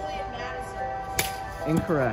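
Background music with steady tones, broken about a second in by one sharp crack of a plastic wiffleball bat hitting the ball. A short voice follows near the end.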